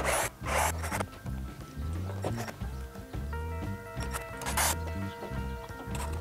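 Background music with a steady beat, over a cordless drill running in a few short bursts as screws are driven into wood, twice right at the start and once more near the end.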